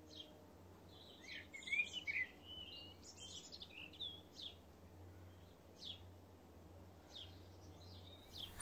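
Small birds chirping, a flurry of quick twittering calls in the first few seconds and then single chirps every second or so, over a faint low hum.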